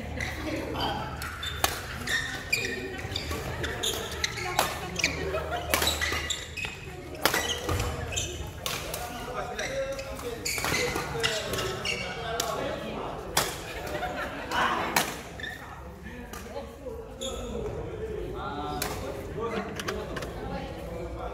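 Badminton rackets striking a shuttlecock in a doubles rally: sharp hits at irregular intervals, ringing in a large hall, with players' voices beneath them.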